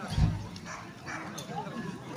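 A dog barking once, a short deep bark about a quarter second in, over people chatting.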